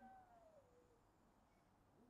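Near silence: room tone, with one faint pitched sound sliding down in pitch during the first second.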